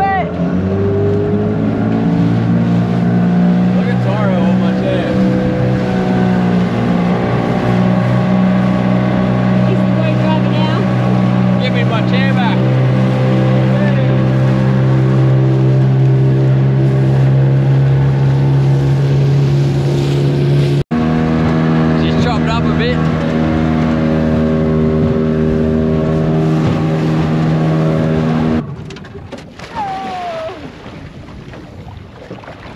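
Outboard motor on a small aluminium tinny running steadily under way, a loud even drone; near the end it falls away sharply as the boat comes off the throttle nearing the shore.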